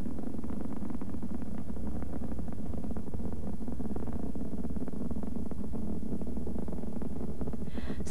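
Steady low rumble of rocket engines, even and unchanging, with no sudden bangs.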